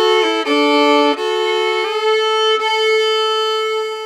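Fiddle playing double stops: the open A string drones steadily while the notes beneath it step down on the D string. About two seconds in, a small pinky slide takes the D string up to the A, in unison with the open A drone, for a grittier sound.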